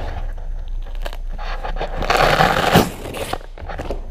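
A fabric winch blanket being handled and opened by hand: rustling and crinkling throughout, with a louder rasping tear lasting about a second, starting about two seconds in.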